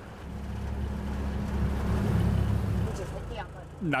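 Fishing boat's engine running under way, a steady low drone with rushing water and wind noise over it; the drone drops away about three seconds in.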